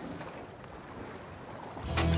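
Steady wind and sea noise on a boat on open water, with no distinct events.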